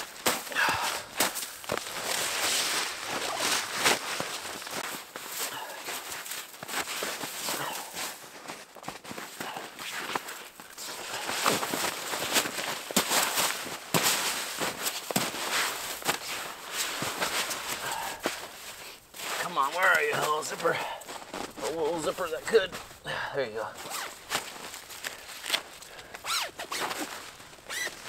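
Winter boots crunching and shuffling in deep snow, in irregular steps and scrapes. A voice is heard briefly twice, about two-thirds of the way in.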